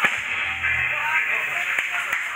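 A live rock band ending a song on one sharp final hit, with a low bass note ringing on briefly, then the first scattered claps near the end.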